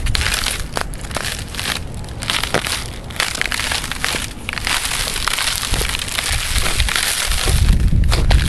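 Footsteps on thin frozen pond ice: the ice crunches and crackles under each step in a dense run of sharp clicks and cracks. A low rumble comes in near the end.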